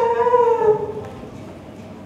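A girl's voice holding one long, slightly falling wailing note, acted crying, that fades out about a second in.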